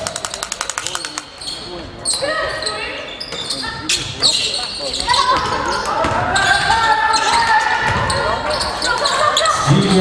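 Basketball play in a large echoing hall: the ball bouncing on the hardwood court with a few sharp knocks, and from about halfway through a build-up of high overlapping calls and squeaks from the players on court.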